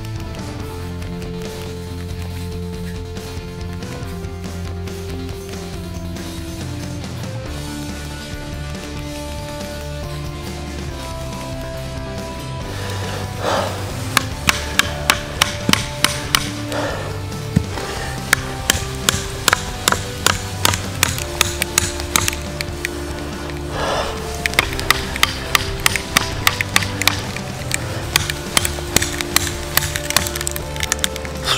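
Background music throughout; from about halfway, a Schrade SCHF37 survival knife's thick carbon-steel blade chopping into wood in quick runs of sharp strikes.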